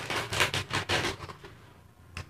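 Crinkling and crackling of a foil snack packet being torn open and handled, a quick run of crackles over the first second or so that dies away.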